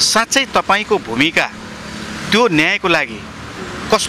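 A man talking in Nepali, with a short pause in the speech about halfway through, over the steady noise of road traffic, with motorbikes and cars going by on the street.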